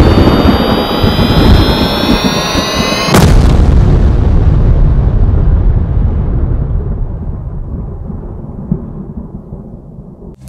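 Cinematic trailer sound effect: a rising, swelling tone builds for about three seconds, then a heavy boom hits and its low rumble slowly dies away.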